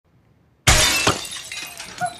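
A window pane shattering as a thrown brick smashes through it: a sudden loud crash about two-thirds of a second in, a second sharp crack shortly after, then broken glass tinkling away.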